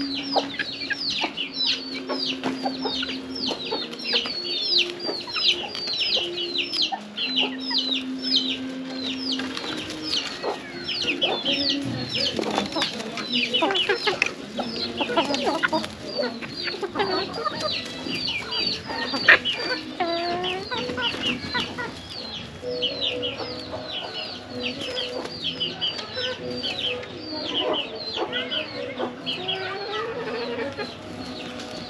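Free-range hens clucking, with chicks giving a constant run of short, high, falling peeps, about three or four a second. A few drawn-out lower calls come in, and there is one sharp tap about two-thirds of the way through.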